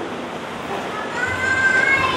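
A high-pitched, drawn-out call, rising slightly in pitch, that starts about a second in and lasts about a second.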